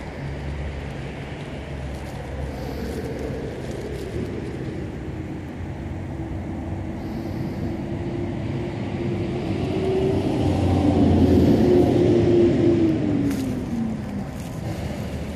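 Road traffic on a busy street: a steady low rumble of engines and tyres, with one vehicle getting louder and passing by late on, its engine note dropping in pitch as it goes.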